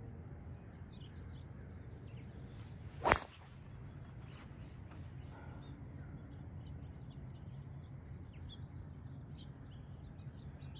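Golf driver striking a ball off a tee: one sharp crack about three seconds in, then a low steady outdoor hum.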